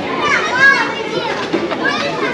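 Children's high-pitched voices, loudest in the first second and again near the end, over other people talking.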